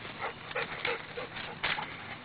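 A dog giving a quick series of short barks and yips, about five or six in a row, the loudest near the end.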